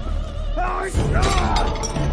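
Film fight-scene soundtrack: dramatic music with swooping tones, and a crash with shattering crockery and glass about a second in as a body lands on a laid table.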